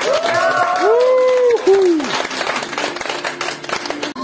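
An audience clapping, with a few long, rising-then-falling cheers in the first two seconds.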